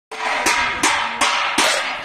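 A metal satellite-dish reflector being beaten with a metal utensil in a steady rhythm of about two and a half strikes a second, each strike ringing, with more metal clanging between the beats.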